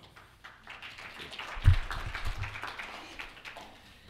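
Audience applauding, dying away toward the end, with a single low thump about one and a half seconds in.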